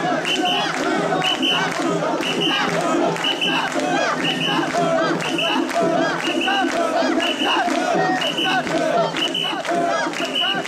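Mikoshi bearers chanting together in a loud, steady rhythm, about one call a second, with a short high note on each beat over the noise of a large crowd.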